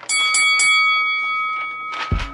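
A bell struck three times in quick succession, then ringing on with clear high tones that slowly fade.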